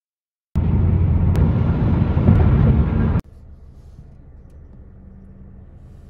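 Car cabin noise: about two and a half seconds of loud road and engine rumble from a moving car, then a sudden cut to a much quieter, steady low hum inside the car.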